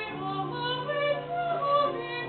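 A woman singing a classical sacred song, her voice moving through a short phrase of several notes that climbs higher near the end, over steady held low accompaniment notes.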